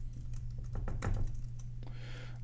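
Typing on a computer keyboard: a run of separate key clicks, several a second, over a low steady hum.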